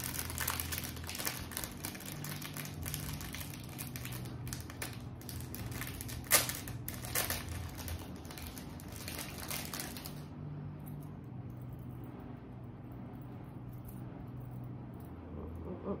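Thin plastic packaging crinkling and rustling as a small item is unwrapped by hand, with one sharp click about six seconds in. The crinkling dies down to quiet handling about ten seconds in.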